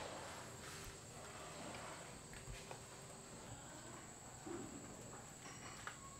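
Quiet ambience with a faint steady high-pitched tone and a few soft taps, one near the start.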